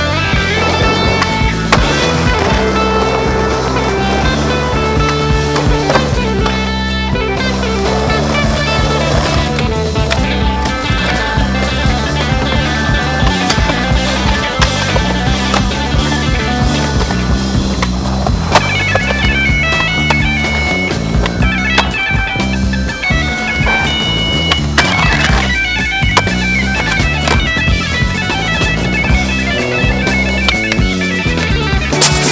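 Guitar-driven rock music plays throughout, with skateboard sounds mixed in: wheels rolling on pavement and sharp clacks of board pops and landings scattered through it.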